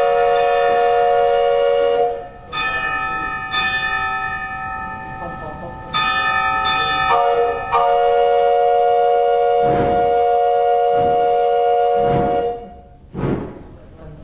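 Metal bells struck one after another, about six strikes, each ringing on for several seconds so that the tones overlap. Near the end come a few softer, duller knocks.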